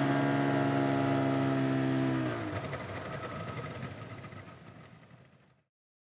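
The final sustained chord of a rock song, on distorted guitar and bass, rings out and sags down in pitch about two seconds in. It then breaks into a rough, fading noise that dies away to silence about five seconds in.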